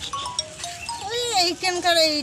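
A woman's high-pitched voice in long, drawn-out sing-song phrases, held on steady notes that step up and down in pitch.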